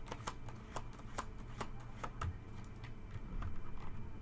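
A tarot deck being shuffled by hand: a series of sharp card snaps, coming quickly in the first two seconds and more sparsely after.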